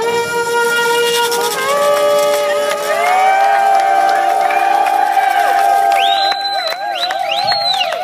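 An acoustic street band of banjo, upright bass, brass and group vocals holds a long closing chord that ends the song, the voices wavering on the held notes. High shrill whistles rise over it near the end.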